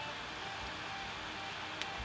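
Quiet steady hiss with faint background music underneath, and a single soft mouse click near the end.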